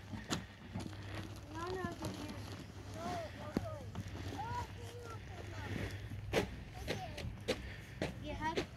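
Faint children's voices, high-pitched calls and chatter in short bits. A few sharp knocks come near the end.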